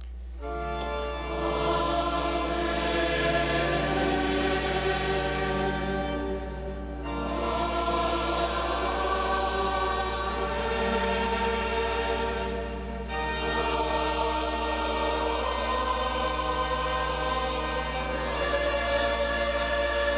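Choir singing sacred liturgical music in long held notes, in phrases with short breaks about seven and thirteen seconds in.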